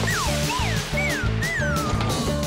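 Upbeat background music with a steady beat, overlaid by a string of high swooping tones that fall in pitch, about two a second.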